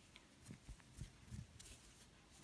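Near silence: room tone with a few faint, soft low bumps in the first second and a half.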